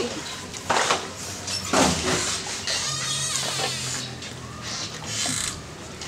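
Two Labrador retrievers snuffling and licking close up, in short noisy bursts.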